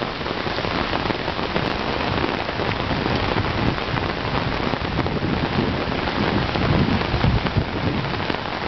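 Heavy rain pouring steadily onto pavement and a wet street. A low rumble swells near the end.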